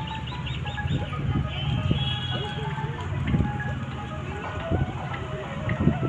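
Busy open-air ambience: many birds chirping in quick short calls over a steady low hum, with scattered distant voices.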